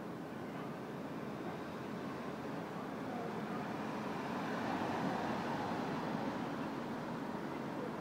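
City street traffic noise, a steady rumble that swells for a couple of seconds about halfway through.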